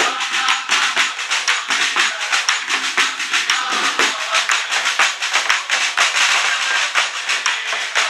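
A group of carolers singing a Christmas carol together, with fast, steady rhythmic hand clapping throughout.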